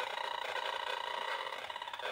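RF meter's audio output giving a steady, finely pulsing electronic buzz with overtones: the meter sounding out the phone's radio transmissions once airplane mode is switched off, the reading at several thousand millivolts per meter.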